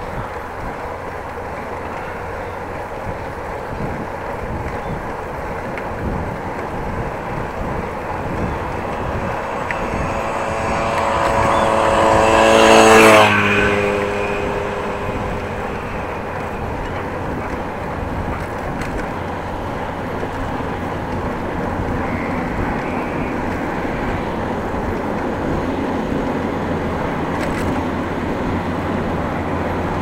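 Steady wind and rolling noise of a bicycle riding a paved bike path. Near the middle, a motor vehicle approaches and passes close by, its engine note growing louder and then dropping in pitch as it goes past.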